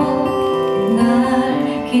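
A woman singing a slow Korean ballad to steel-string acoustic guitar accompaniment, her voice holding long notes over the guitar.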